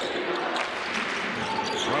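Basketball dribbled on a hardwood court, heard over a steady arena crowd murmur.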